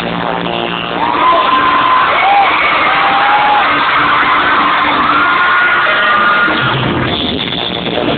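Live pop music played loud in an arena, recorded from among the audience on a low-quality device that makes it sound dull and muffled. Long, high held voice notes run over it, with crowd noise mixed in.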